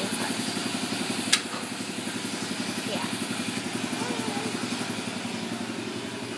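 An engine idling with a steady, rapid low pulse, and one sharp click about a second in.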